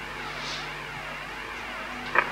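Steady low hum and hiss from stage amplification between songs, the hiss sweeping up and down about twice a second as if through a phaser or flanger.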